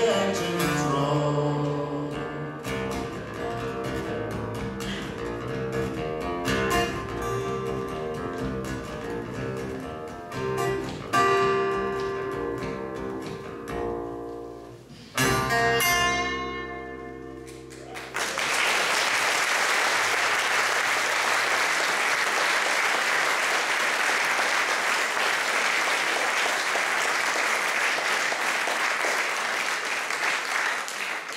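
Two acoustic guitars playing the closing bars of a folk song, ending on a final strummed chord about halfway through that rings and dies away. Audience applause then breaks out and keeps up steadily.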